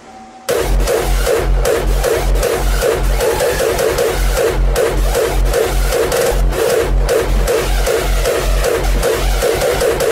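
Hard electronic dance music from a hardstyle mix. After a half-second break, the drop comes in with a heavy kick drum on every beat under a fast, pulsing synth line.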